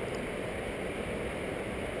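Steady background hiss with no distinct sounds in it: room tone.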